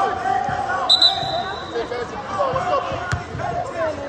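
A basketball bouncing on an indoor gym court amid talk and chatter from players and spectators, with a short high-pitched squeal about a second in.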